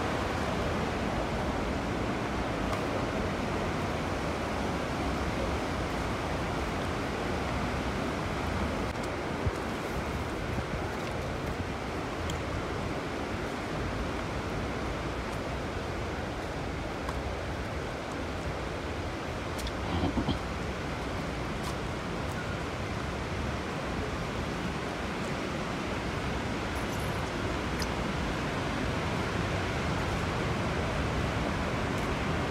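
Steady rush of falling water from the Fourteen Falls waterfall, an even hiss with a few faint clicks and a brief slightly louder sound about twenty seconds in.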